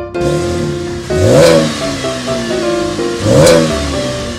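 Chevrolet Camaro engine started with the key, catching right away, then revved twice about two seconds apart, each rev rising and falling in pitch. Background music plays underneath.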